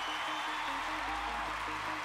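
Background music with steady held notes under an even haze of noise, in a pause between narrated lines.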